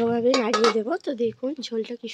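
Metal pan lid clinking against cookware as it is handled and set down, a few clinks about half a second in, under a woman's voice.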